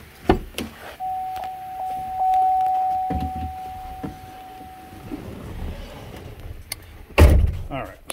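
GMC Sierra pickup's driver door opened with a latch click, a steady electronic tone sounding for about four seconds, then the door shut with a heavy thump near the end, the loudest sound.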